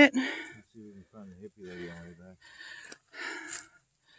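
A low, quiet murmuring voice, then a breathy exhale near the end.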